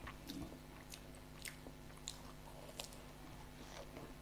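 A person chewing a mouthful of samosa, faint, with a handful of sharp wet mouth clicks spread through the chewing.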